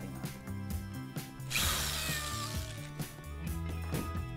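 Cordless drill running briefly for about a second, starting about a second and a half in, drilling holes in the cat house base, over background music.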